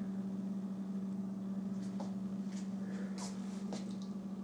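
A steady low electrical or mechanical hum, like a room appliance or fan, with a few faint short ticks or rustles in the second half.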